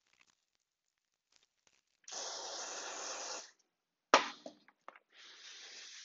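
WD-40 aerosol can spraying in one steady hiss of about a second and a half, followed by a single sharp knock and a few light clicks. Near the end a softer, even rubbing starts: a Scotch-Brite pad scrubbing the rusty cast-iron jointer bed.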